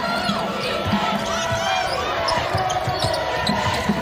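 A basketball being dribbled on a hardwood court: repeated bounces at an uneven pace, with voices in the background.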